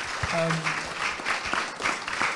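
Theatre audience applauding, a dense spread of many hands clapping.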